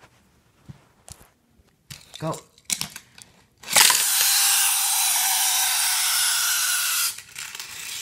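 A few light plastic clicks from the track-set launcher, then a die-cast Hot Wheels car running fast along plastic track: a loud, steady rushing noise for about three seconds that stops fairly suddenly.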